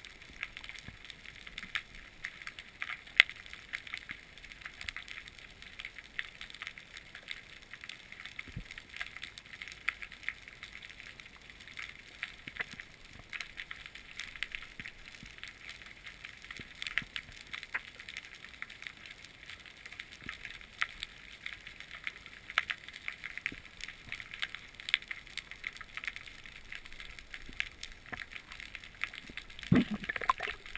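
Underwater ambient sound picked up through an action camera's housing: a steady faint crackle of many small clicks. A single louder thud comes right at the end.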